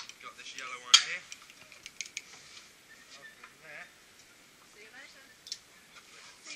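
Sharp metallic clicks and clinks of zipline gear, a pulley trolley and carabiners on the steel cable. The loudest comes about a second in and smaller ones follow, with faint voices talking in between.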